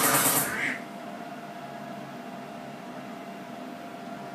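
Karaoke machine music cutting off abruptly about half a second in. It leaves the steady hiss of a small karaoke room with a faint steady hum.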